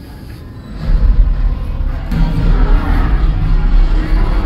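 Music with heavy bass playing loudly over a cinema auditorium's sound system. It comes in suddenly about a second in and grows fuller about two seconds in.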